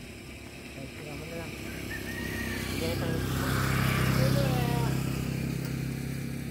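A motor vehicle going by, its engine growing louder to a peak about four seconds in and then fading.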